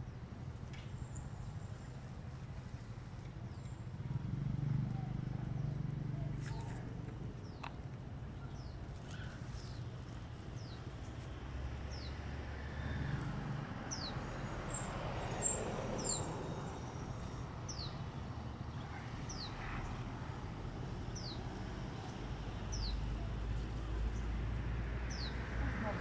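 A small bird repeats a short, high, falling call about once a second, mostly in the second half, over a low steady background rumble.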